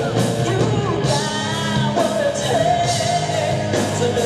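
Live rock band: a female lead vocalist singing long, held notes over electric guitar, bass and drums.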